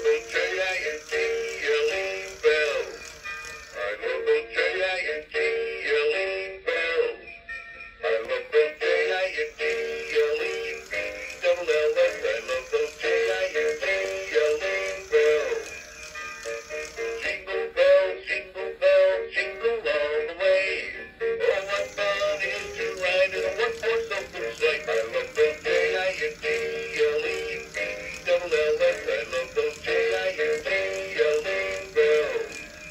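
Gemmy 'Hats Off To Santa' animatronic Santa playing a sung Christmas song through its built-in speaker as it moves. The song breaks off briefly about seven seconds in.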